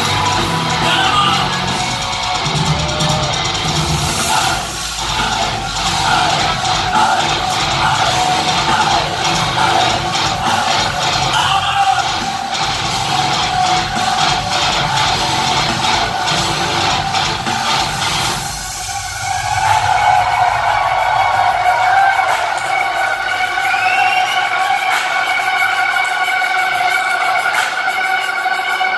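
Live progressive metalcore band playing loud, with heavy distorted guitars and drums. About eighteen seconds in, the drums and low end stop and steady held ringing tones carry on to the end.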